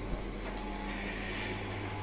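Steady hum of a fish room's running aquarium equipment, air pumps and filters, with a low buzz under an even hiss.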